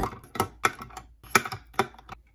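Plastic pens, some hung with bead charms, dropped one by one into a plastic pen cup, clicking and clattering against the cup and each other in a handful of sharp knocks.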